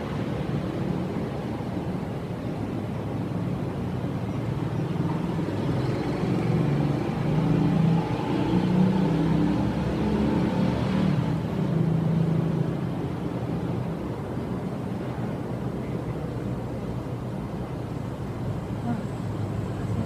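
Low, steady rumble of a motor vehicle or road traffic, swelling for several seconds in the middle before settling again.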